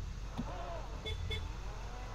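Two short electronic beeps from the SUV about a second in, a quarter second apart, over a low steady rumble.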